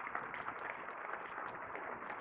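Audience applauding: a steady spread of many hands clapping.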